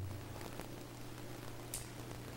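Quiet room tone in a pause between speakers: a steady low electrical hum under faint hiss, with one brief faint tick near the end.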